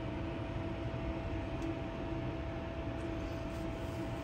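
A steady mechanical hum with a constant high whine held over a low rumble.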